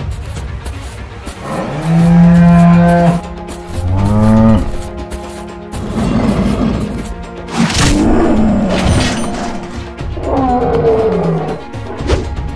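Cattle moos over background music: a long low moo about two seconds in and a shorter one that rises and falls at about four seconds. Rougher growling calls follow, with a sharp hit near eight seconds, and another call comes near eleven seconds.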